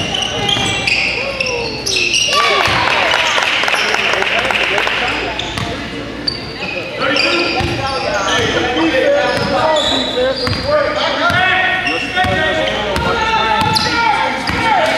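A basketball dribbling on a hardwood gym floor, repeated sharp bounces, amid the shouting of players and coaches during play.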